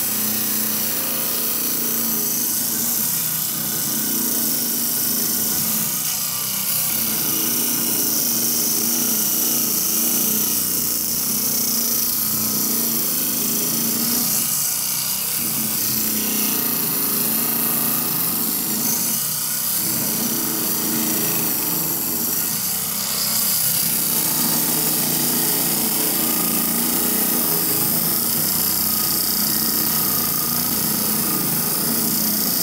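Lortone TS10 10-inch lapidary trim saw, its diamond blade grinding slowly and steadily through a block of very hard rock while the belt-driven motor runs without a break. The drive belt runs slack, with about twice the play the manual allows, which robs the saw of some cutting power.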